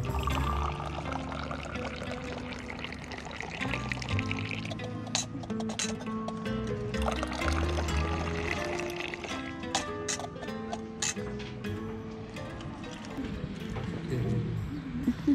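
Background music, with tea poured from a metal Moroccan teapot in a long stream into a glass, splashing as it fills. There are a few sharp clicks part way through.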